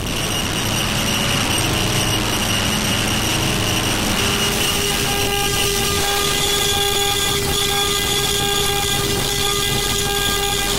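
Experimental electronic noise music: a heavily distorted software synthesizer shaped with EQ, a dense noisy wash with steady held tones. A new cluster of sustained tones enters about five seconds in.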